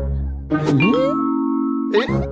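Cartoon soundtrack: music, then a sliding cartoon sound effect that dips and rises in pitch, followed by a steady held chime-like tone of several pitches for about a second.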